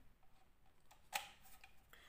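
Mostly quiet, then one sharp click about a second in as the condenser microphone's cable plug is pushed into a jack on the V8 sound card, followed by a faint short tone.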